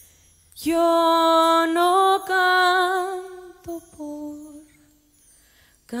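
A woman's singing voice, sparsely accompanied, holding one long note with vibrato that steps slightly higher partway through, then a shorter, softer, lower note. The first note comes in about half a second in.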